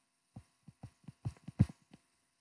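Pen stylus tapping and rubbing on a tablet screen as two characters are handwritten: a run of about ten short, irregular soft knocks.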